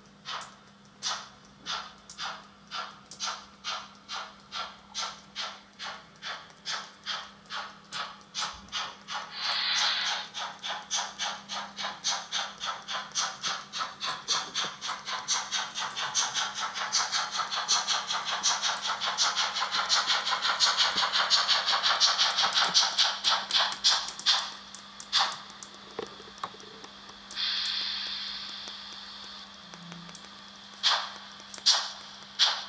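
Sound decoder of a Märklin H0 model BR 01 steam locomotive playing steam-engine chuffs through the model's small speaker. The chuffs start slowly, about two a second, quicken to a fast steady beat as the model speeds up, and stop about 24 seconds in. A hiss of steam sounds briefly about 10 seconds in and again near the end, after the chuffing has stopped.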